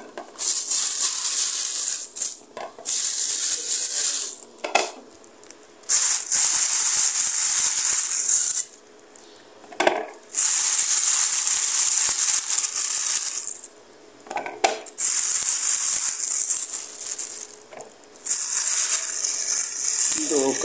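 Thin plastic bag crinkling and rustling as it is handled, in stretches of a few seconds with short breaks between.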